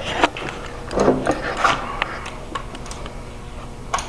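Scattered sharp clicks and knocks from a crossbow being handled and worked on, echoing off bare walls.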